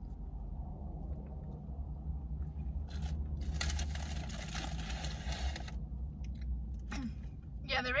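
Close-up chewing of a bite of cheese quesadilla, with a couple of seconds of crackly, rustling noise midway, over a steady low hum.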